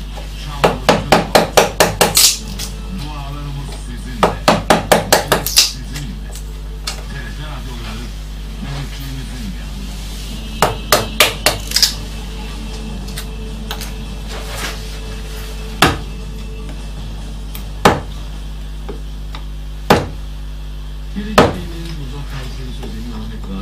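Round carver's mallet driving a chisel into a wooden relief panel. Three quick runs of sharp taps, about five a second, then single strikes roughly two seconds apart, with a double strike near the end.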